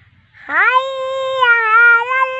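A high-pitched voice in Islamic recitation chant, starting about half a second in with an upward scoop into one long held note. The note stays steady with a slight waver and runs on past the end.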